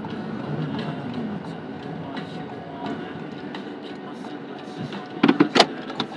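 Inside a moving taxi on a wet road: steady cabin and road noise with low voices in the background, and a few loud spoken words near the end.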